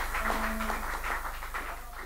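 Room sound after a song: indistinct voices and scattered light taps, with a couple of short held notes, fading out toward the end.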